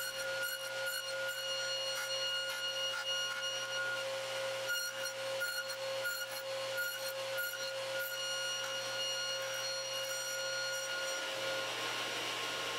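Table saw running with a steady hum and whine while a board is pushed over its blade, raised a quarter inch, to trim tenon shoulders, giving repeated short rasping cuts in the wood. The whine stops near the end.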